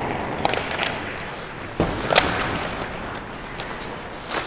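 Ice hockey play: skate blades scraping the ice under a steady hiss, with sharp clacks of sticks and puck, the loudest two close together about two seconds in.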